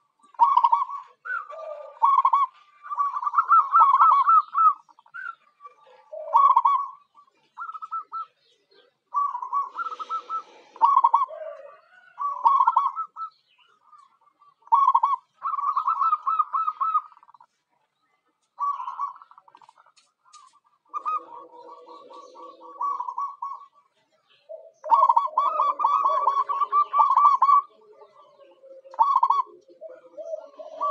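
Zebra dove (perkutut) cooing: repeated bouts of rapid, staccato cooing notes, each bout lasting a second or two, with short pauses between them.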